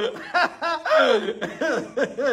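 A man laughing in short, repeated pitched bursts, about three a second.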